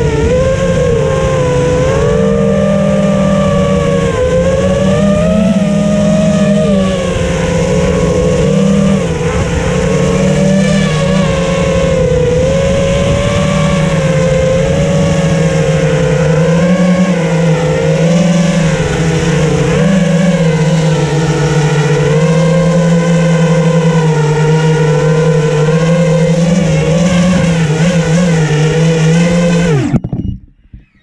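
Onboard sound of a 5-inch FPV racing quadcopter's four brushless motors and propellers: a loud, buzzing whine whose pitch rises and falls with the throttle as it flies. It cuts out at the very end, when the quad lands.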